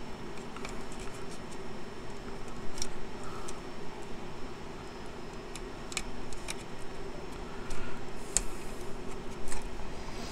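Scattered small clicks and plastic taps from handling a graphics card and plugging its fan and LED cable connectors back in, over a steady low hum.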